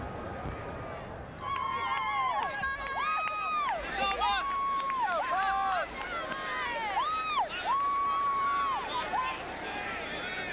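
Stadium crowd noise. From about a second and a half in, cheerleaders' high-pitched yelled chants come in: overlapping drawn-out calls that rise, hold and fall, continuing until shortly before the end.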